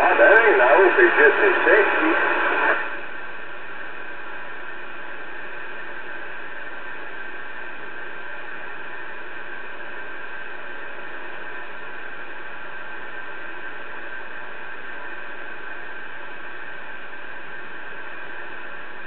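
CB radio receiver (Connex CX-3400HP) on channel 34: a voice transmission comes through for about three seconds, then the speaker carries steady static hiss with faint steady tones in it.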